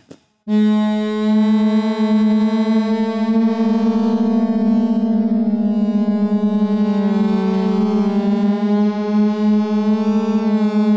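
UVI Falcon wavetable synth patch sounding four voices of the same held note, played by fingers pressing on an MPE pressure pad. The voices are detuned against one another and the timbre changes, so the tone wavers and shifts; the note comes in about half a second in and its upper tones bend noticeably in the last few seconds.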